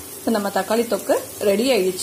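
A woman speaking over the faint sizzle of tomato paste frying in oil in a pan, cooked down to the stage where the oil has separated.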